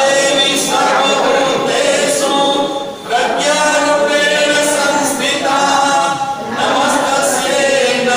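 A group of voices singing a devotional hymn together in long sung phrases, with a short break for breath about three seconds in.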